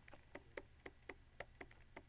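Faint, irregular small ticks of a stylus tapping on a pen tablet as words are handwritten. There are about eight soft clicks in two seconds, over near silence.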